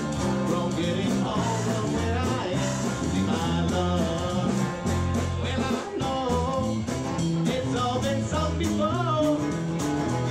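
Live band playing a bluesy rock song: acoustic guitar, electric bass and drums keeping a steady beat, with a lead melody that bends and wavers in pitch over the top.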